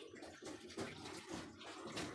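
Faint, irregular wet sounds of thick flaxseed gel shifting inside a glass jar as the jar is handled and tilted.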